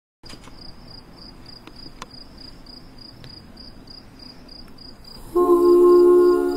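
A cricket chirping steadily, about three short high chirps a second, over a faint hiss with a few soft clicks. About five seconds in, a loud held musical chord comes in over it.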